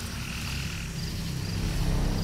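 Frogs calling: short high trills repeated every half second or so, over a low steady hum.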